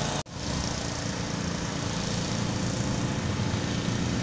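A vehicle engine running steadily with a low hum, after a brief dropout of the sound just after the start.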